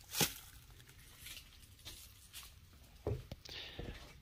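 Faint handling noises of a plastic-wrapped car seat and its steel seat slides: rustling plastic film, a sharp click just after the start, and a couple of light knocks about three seconds in.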